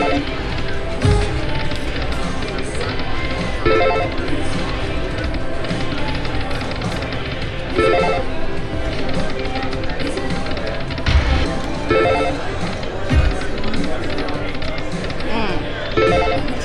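Aristocrat Dragon Link 'Peace & Long Life' video slot machine running through repeated spins: its game music plays on, with a cluster of chiming tones about every four seconds as each spin starts and the reels stop, over casino-floor chatter.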